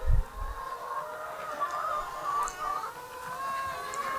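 A flock of brown laying hens clucking steadily, many overlapping wavering calls, with a short low thump at the very start.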